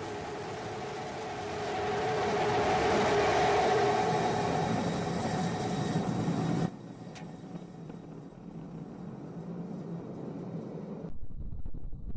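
Starship SN15's Raptor rocket engines firing during the landing burn: a steady roar with a hum through it, swelling about two seconds in. It cuts off abruptly about seven seconds in to a faint hiss, and a low rumble starts near the end.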